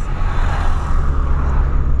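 Inside the cabin of a 2003 Ford Fiesta Supercharged on the move: a steady low rumble of engine and road, with a hiss of tyre and wind noise that swells briefly around the middle.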